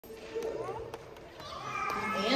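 Young children's voices chattering and calling out in a large, echoing room, growing louder toward the end, with a couple of light clicks around the middle.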